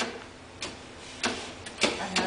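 Relays and switches on a relay-logic trainer panel clicking: three sharp clicks about half a second apart, as a reversing relay drives a small linear actuator back and forth.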